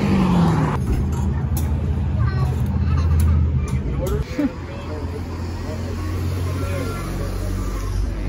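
A steady low hum, the kind a running vehicle engine makes, with faint brief snatches of voices over it.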